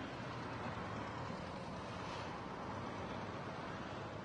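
Steady road noise of a car driving along a city street: an even rumble of tyres and engine with no sharp events.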